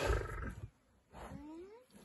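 A male lion gives a short, low grunt at the start, followed about a second later by a brief rising vocal sound.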